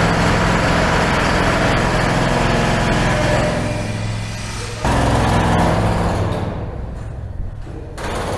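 Steady noise of construction machinery in a tunnel under repair, with a low hum under it. It dips, jumps back up suddenly about five seconds in, then fades toward the end.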